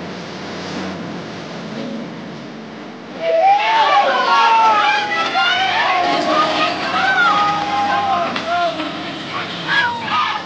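Crowd chatter, then about three seconds in many voices break out together in loud, drawn-out shouts and whoops that carry on.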